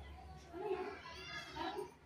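Children's voices talking in short, high-pitched phrases.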